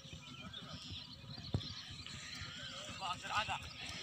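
Hoofbeats of a galloping horse on a dirt track, with one sharp knock about a second and a half in. People's voices call out about three seconds in.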